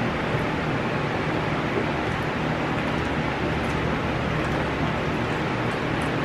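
Steady room noise: an even hiss with a low, constant hum underneath and no distinct events.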